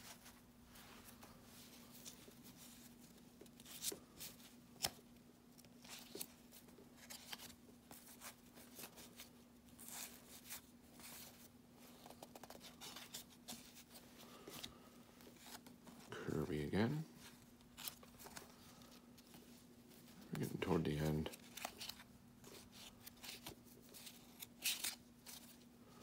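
Baseball cards being flipped through and slid off a hand-held stack one at a time, giving faint scattered clicks and rustles of card stock. A steady low hum runs underneath, and a short vocal sound comes twice, about two-thirds of the way in and again a few seconds later.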